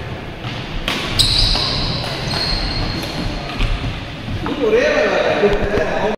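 Badminton rally on a wooden court: a few sharp racket strikes on the shuttlecock and players' shoes on the floor, with a high squeak about a second in.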